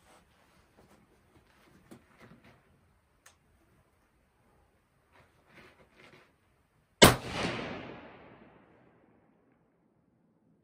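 A single rifle shot from a 6.5 Creedmoor bolt-action, the cold bore shot fired from a cold barrel: one sharp, loud report about seven seconds in, echoing away over a second or so. A few faint clicks and rustles come before it.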